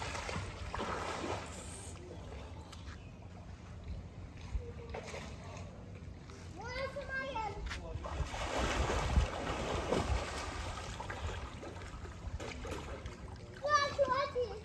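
Water splashing from a swimmer's arm strokes and kicks in a swimming pool, heaviest about eight to ten seconds in.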